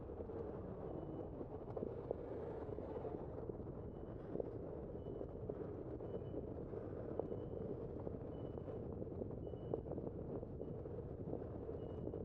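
Steady road and tyre rumble of a bicycle ride heard from a bike-mounted camera, with small rattles and clicks over the cracked pavement. Faint short high chirps recur about once a second.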